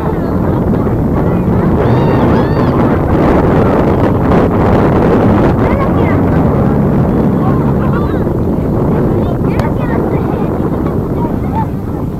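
Steady wind rumble buffeting the microphone, with faint, distant voices of players and spectators calling out across the field.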